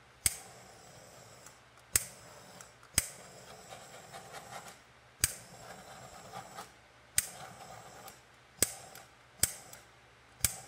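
Handheld butane torch clicked on seven times at irregular intervals, each sharp ignition click followed by a short, uneven hiss of flame.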